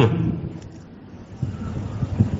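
A pause in a man's talk: his voice breaks off at the start, leaving a low rumbling background noise with a few faint low knocks or blips in the second half.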